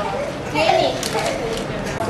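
Indistinct talking and chatter of several young voices, no words clear.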